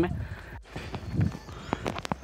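Footsteps walking on a concrete path, with a few sharp footfalls near the end.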